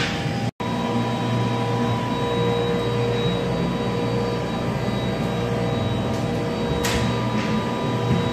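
Steady drone of factory-floor machinery and ventilation, a constant hum with several fixed tones. It cuts out completely for a split second about half a second in, and a few short hisses come near the end.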